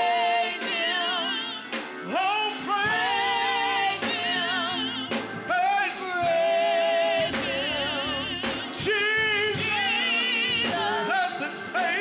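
Gospel praise team of women and men singing a worship song in held phrases with vibrato, backed by a Roland XP-80 keyboard and a drum kit.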